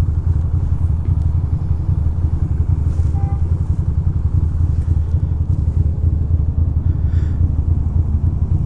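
Air-cooled L-twin engine of a 2006 Ducati Monster 620 idling steadily with the bike stopped.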